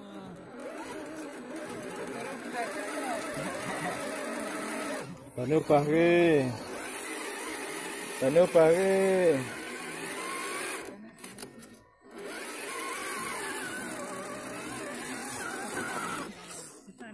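A small RC crawler's electric motor and geared drivetrain whine steadily as it claws up a muddy bank. Two louder rising-and-falling sounds come near the middle, and the whine breaks off briefly a few times.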